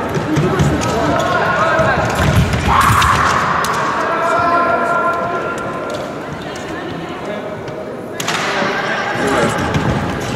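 Indistinct voices echoing in a large sports hall, with low thuds of footsteps on the fencing piste in the first few seconds.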